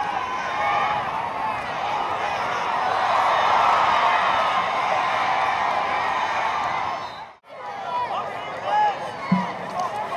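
Football stadium crowd noise, many voices shouting over one another. It swells about three to four seconds in and cuts out abruptly for a moment about seven seconds in before picking up again.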